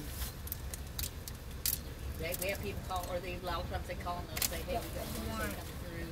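Muffled speech from a person talking in the middle of the stretch, over the low steady hum of the stopped car's idling engine, with a few sharp clicks.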